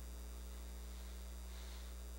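Steady low electrical mains hum, faint and unchanging, with nothing else heard over it.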